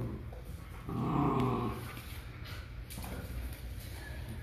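A dog giving a short play growl about a second in, lasting under a second.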